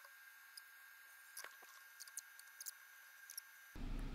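Near silence: faint hiss with a few soft, faint clicks spread through it.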